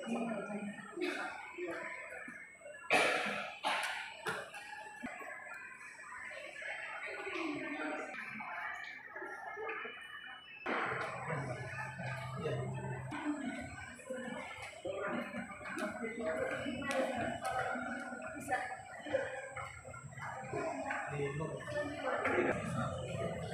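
Indistinct voices of people talking in a terminal hall, with two sharp knocks about a second apart around three seconds in. A low steady hum comes in about halfway through.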